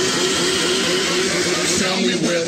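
Build-up of an electronic dance track: a loud, steady wash of noise with a held, wavering vocal-like note beneath it, leading into the drop.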